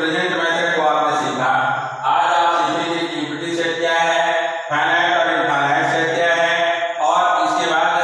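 A man's voice talking at length in a drawn-out, sing-song delivery, with short breaks between phrases.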